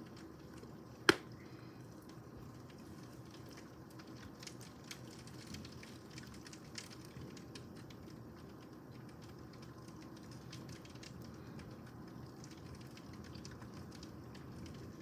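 Rain heard from indoors through a screened window: a faint steady hiss with scattered light ticks of drops. One sharp click about a second in.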